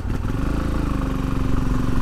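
Motorcycle engine running at low revs with a steady pulsing note as the bike rolls slowly forward. The pitch lifts slightly soon after the start, then holds, and the sound grows a little louder toward the end.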